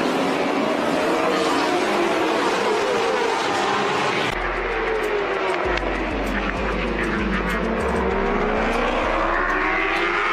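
A pack of road-racing motorcycles running at high revs on track, their engine notes rising and falling as the bikes go past. The sound changes abruptly about four seconds in.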